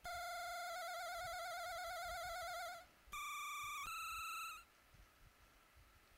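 Teenage Engineering Pocket Operator synthesizer playing single beeping notes: one long low note that starts to warble with vibrato about a second in, then after a short break two higher notes in quick succession, stopping about four and a half seconds in.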